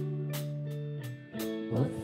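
A live rock band plays a slow ballad between sung lines. Electric guitars and bass hold a chord that fades about a second in, a new chord comes in with a light cymbal stroke, and a female voice sings one word near the end.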